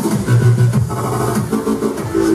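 Tekno playing loud from a live set: the fast pounding kick drum drops out into a break, leaving a held bass note and synth tones.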